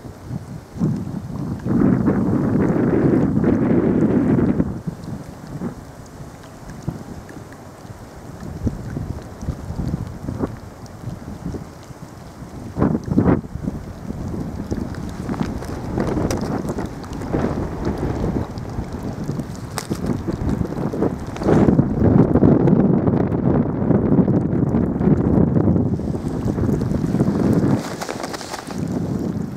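Wind buffeting the camera microphone in low, rumbling gusts, loudest about two to four seconds in and again from about twenty-two to twenty-six seconds in, with occasional sharp pops.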